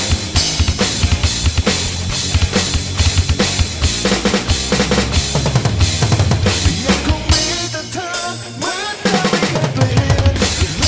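Sampled drum kit from a touchscreen drum app played along to a recorded rock song: a steady beat of kick, snare and cymbal hits. Near the end the drums drop out for about a second and a half, leaving the song's melody, then come back in.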